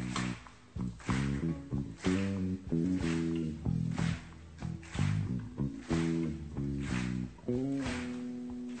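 Electric bass guitar playing a solo line of low, stepwise melodic notes, with drums hitting about once a second behind it.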